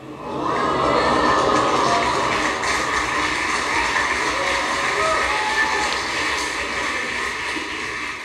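Studio audience laughing, cheering and applauding in response to a joke, rising quickly right at the start and easing slightly toward the end.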